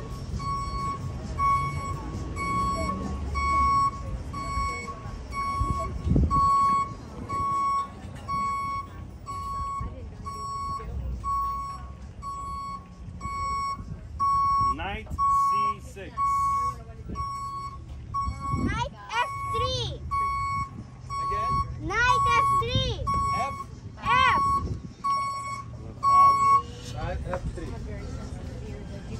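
An electronic beeper sounding a steady, high single-pitched beep about three times every two seconds, then stopping a little before the end.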